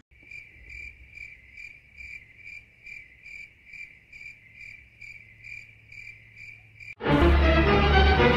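Cricket chirping sound effect: a clean, even chirp repeating a little over twice a second over near silence, the comedy cue for an awkward or thoughtful silence. About seven seconds in it is cut off by a sudden loud burst of sound.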